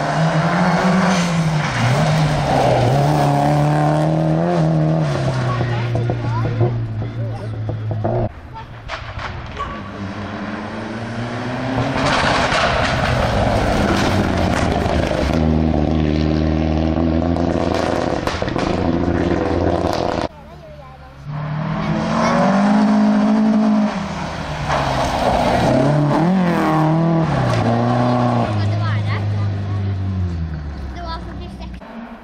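Rally cars driven hard past one after another, among them a Subaru Impreza WRX STi and a Mitsubishi Lancer Evolution: turbocharged four-cylinder engines revving up and down through gear changes on the stage. The sound drops away sharply about 8 and 20 seconds in, as one car goes and the next comes.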